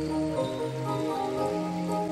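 Yamaha electronic keyboard playing soft, sustained chords over a slowly changing bass line.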